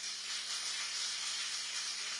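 Audience applause: a steady patter of many hands clapping, starting at once.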